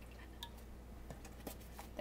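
Whipping cream poured from a carton into a small saucepan, a faint trickle with a few soft ticks.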